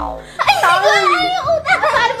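High-pitched giggling and laughter from several voices, breaking out about half a second in and carrying on loudly.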